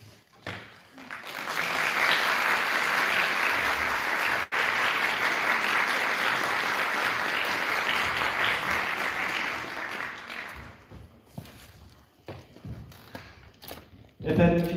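Audience applauding in a large hall. The applause swells about a second in and holds steady for roughly nine seconds, broken by a split-second dropout. It then thins to scattered claps and dies away.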